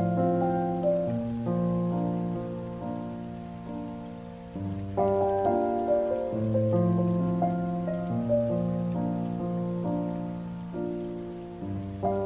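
Solo piano playing a slow, gentle ballad arrangement: held bass notes under a melody that swells and fades, with a new phrase starting about five seconds in. A faint steady hiss lies beneath the piano.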